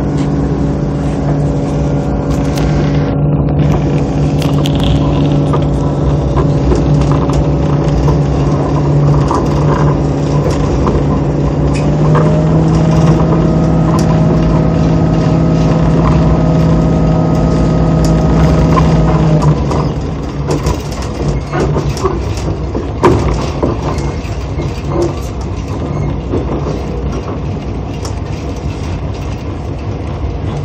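Commuter diesel railcar heard from inside the cabin, its diesel engine running steadily under power with a rise in pitch about twelve seconds in. About two-thirds of the way through the engine note falls away, leaving the rumble of wheels on rail with scattered clicks and knocks.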